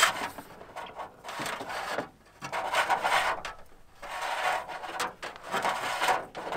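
A dash cam cable being pulled by hand through a small drilled hole in a minivan's liftgate sheet metal, rubbing and scraping against the edges in several irregular pulls.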